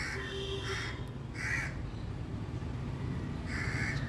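Four short, harsh bird calls, unevenly spaced, over a low steady background hum.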